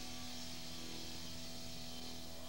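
Steady electric-hum drone from guitar amplifiers left on between songs, with a faint held tone and hiss over it.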